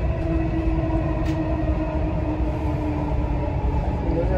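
Dubai Metro train running at speed, heard from inside the carriage: a steady low rumble with a steady multi-tone whine over it.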